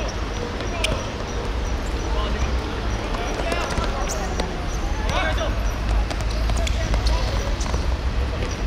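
A football being kicked on an artificial-turf pitch: a few sharp thuds, the clearest a little under a second in. Players' short shouts come in a few times over a steady low rumble.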